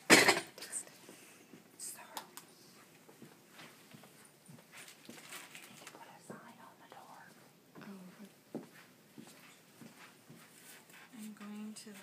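Handling noise from a nasogastric tube, syringe and stethoscope: faint rustles and small clicks, opened by one short loud burst of noise at the very start.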